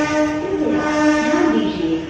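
DEMU train horn sounding one long, steady note as the train pulls out of the station. The note cuts off just before the end.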